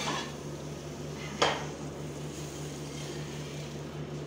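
A single sharp clank of cookware about a second and a half in, as a frying pan of potatoes is handled for plating, over a steady low hum.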